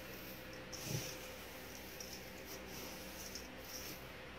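Faint rustling of dry loose herbal tea leaves and flowers turned by hand in a steel tray, coming and going in soft patches, over a faint steady hum.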